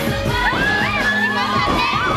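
Young female voices shouting and cheering together over loud dance music, the shouts sweeping up in pitch from about half a second in.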